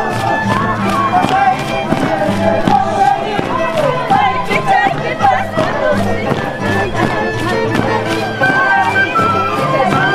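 Live Andean carnival music: a violin melody over a steady drum beat, with voices singing and a crowd in the background.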